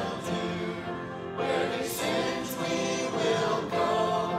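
A congregation singing a hymn together in held, sung phrases.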